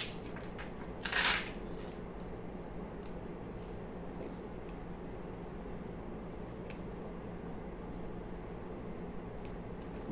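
Quiet handling of self-adhesive half-pearls being peeled from their plastic sheet and pressed onto a small MDF board: a short rustle about a second in, then a few faint light ticks over a steady low hum.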